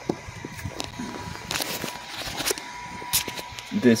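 Handling noise from multimeter test leads and speaker wires being moved: scattered clicks and short rustles, busiest in the middle, over a faint steady high whine.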